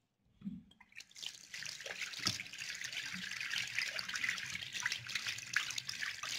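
A bathroom basin tap is turned on about a second in, and water then runs steadily from the spout, splashing over hands into the sink.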